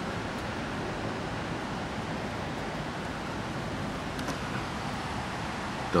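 Steady, even background noise with no distinct events, only a faint click about four seconds in.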